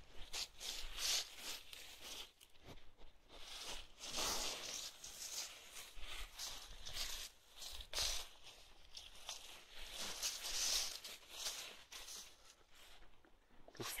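Irregular rustling and scraping bursts from a sheep's curly wool fleece rubbing against the microphone at close range.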